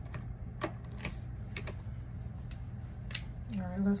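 Light, scattered clicks and taps of hands handling a cash-budget binder and its plastic zip pouch on a desk, about half a dozen spread over a few seconds.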